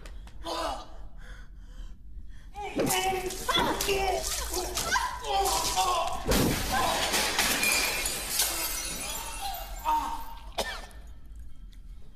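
A man's wordless pained cries and groans mixed with crashing and glass shattering as things are knocked about, the loudest crash about six seconds in.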